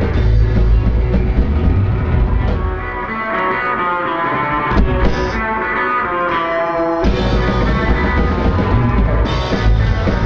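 Live rock band with drums, electric guitar and keyboard, playing loud. About three seconds in the drums and low end drop out, leaving sustained, wavering held tones. About seven seconds in the full band comes crashing back in at once.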